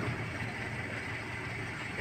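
A motor vehicle's engine idling with a steady low hum.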